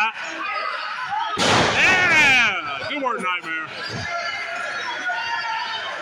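A wrestler slammed down onto the ring mat, a sudden crash about a second and a half in, with the crowd yelling over it, their voices falling in pitch, then chatter.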